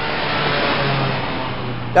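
Car engine sound effect of a car driving past: the engine note swells and then drops slightly in pitch about a second in.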